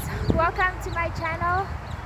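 A woman talking in a fairly high voice, with wind rumbling on the microphone underneath.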